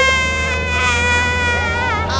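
A high-pitched cartoon voice effect: one long held wail that drops in pitch just before the end. A low steady engine hum from the amphibious tour vehicle runs underneath.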